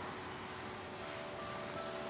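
Steady background hiss of room ambience, with faint, held notes of soft background music beginning about halfway through.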